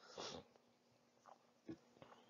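Near silence in a pause of speech: a man's short breath or sniff just after the start and a faint mouth click near the end.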